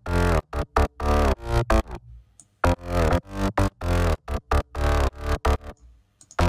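Layered synth bassline (a sub bass, a mid bass and two high bass layers blended on one bus) playing a repeating rhythmic pattern of short and held notes with brief gaps, while the layers are balanced in volume.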